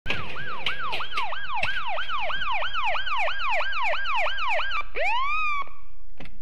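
Police car siren in a fast yelp of about three rising-and-falling sweeps a second. About five seconds in it switches to one slow rising wail that levels off and fades.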